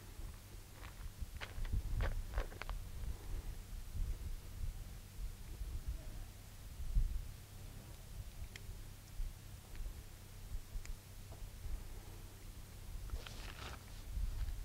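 Low wind rumble on the microphone. Over it come faint clicks from a tiny .22 Short pocket revolver being handled, its cylinder turned by hand: a cluster about a second or two in, then a couple of single clicks later.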